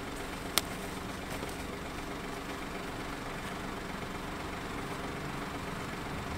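A vehicle engine idling steadily, with one sharp click about half a second in.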